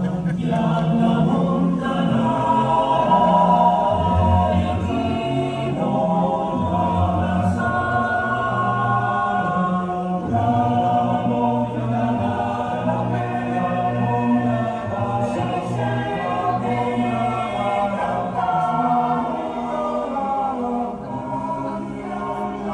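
Background music: a choir singing slow, sustained chords.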